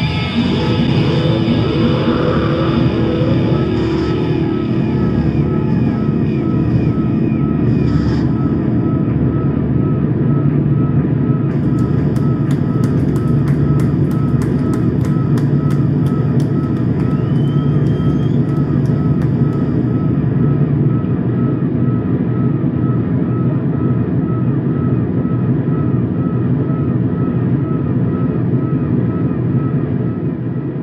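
Live electro-punk band playing a loud, steady, distorted drone of electric guitar and synthesizer, with a small repeating blip about twice a second.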